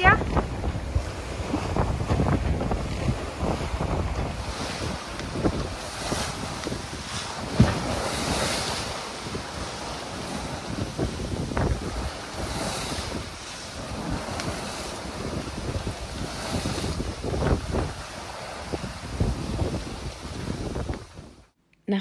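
Wind buffeting the microphone and waves rushing and splashing aboard a sailing yacht under way in about 17 knots of wind. The rush of water swells up every few seconds, and the sound cuts off suddenly near the end.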